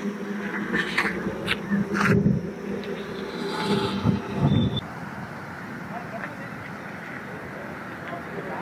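Indistinct voices over a low steady hum, with a few clicks, for about the first five seconds; then quieter outdoor background noise.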